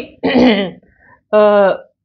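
A woman clears her throat, then gives a short held vowel sound about half a second long.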